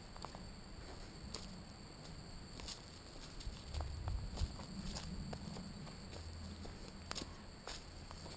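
Footsteps walking on a dirt path littered with dry leaves and twigs, with scattered light crackles and snaps.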